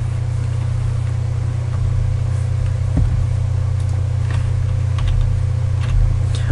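A loud, steady low hum with no speech over it, the same background hum that runs under the narration. A few faint clicks come in the middle.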